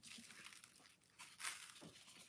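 Faint rustling of sandbox sand sprinkled by hand onto a cardboard base, with a brief louder scratch about one and a half seconds in.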